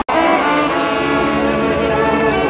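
Mexican street brass band (banda) playing sustained chords: trumpets, saxophones and clarinets over sousaphones. The sound cuts out for an instant at the very start, then the band comes in at full level.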